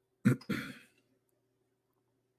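A man clearing his throat once, a short two-part sound near the start.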